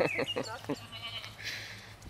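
Goat bleating: a quavering call that breaks off about three-quarters of a second in, followed by a short breathy hiss.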